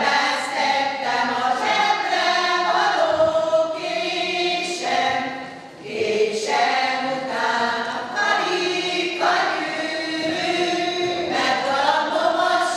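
A group of women singing a song together in long, held phrases, with a short break for breath about six seconds in.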